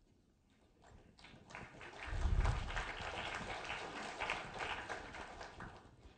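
Audience applauding: the clapping starts about a second in, swells to full strength about two seconds in, then dies away near the end.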